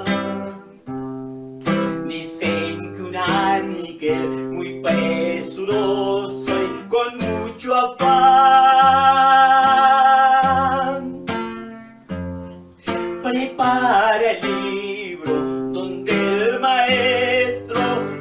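A man singing a Pentecostal chorus in Spanish to his own strummed acoustic guitar, holding one long note for a few seconds in the middle.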